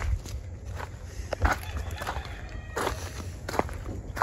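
Footsteps on a mulch and grass path, a few irregular steps about half a second apart, over a low rumble.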